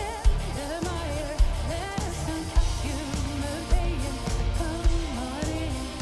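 Live symphonic metal: a female lead vocalist sings a wavering melody with vibrato over the full band, with a heavy drum beat landing about once a second.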